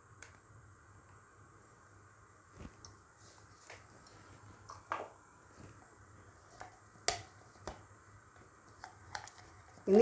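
Sparse light clicks and knocks of a plastic chopper bowl and silicone spatula as ground spice paste is scraped and tapped out of the bowl, the sharpest click about seven seconds in, over a faint steady hum.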